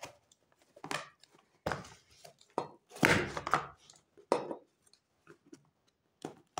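Utility knife cutting through a cardboard box in a series of short strokes, the longest about three seconds in, with the box handled between cuts.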